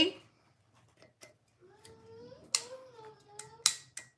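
A few sharp clicks and light knocks from handling a glass Scentsy mini warmer and working its on/off switch, which fails to light it because no bulb is fitted.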